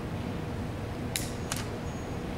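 Two short, sharp clicks about a third of a second apart, over steady low room noise.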